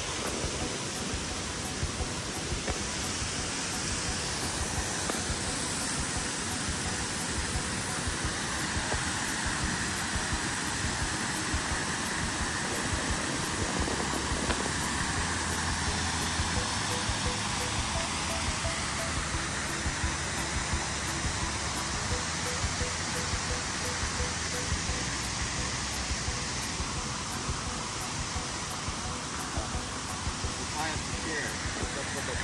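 Steady rush of water from a shallow rocky creek and a small waterfall, a little louder and deeper in the middle.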